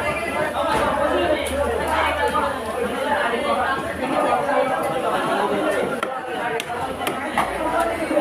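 Background chatter of many voices talking at once, with a few sharp knocks of a cleaver on a wooden chopping block.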